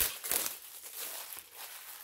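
Clear plastic wrapping crinkling as a plastic shaker cup is pulled out of it. The crinkling is loudest in the first half second, then goes on more faintly.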